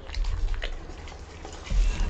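A dog biting and chewing a slice of raw fruit radish, with a few crisp crunches in the first second and a duller low thump near the end.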